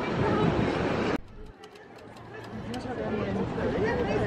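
Busy outdoor ambience with people talking; about a second in it gives way to a quieter street where a typewriter's keys clack in scattered, irregular taps under faint voices.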